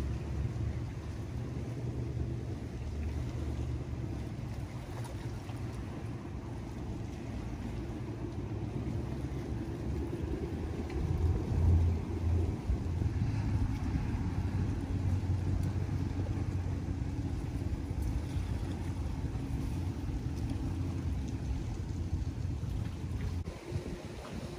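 A steady, low motor drone that swells briefly about halfway through.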